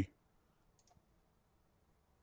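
Two faint computer mouse clicks close together, just under a second in, against near silence.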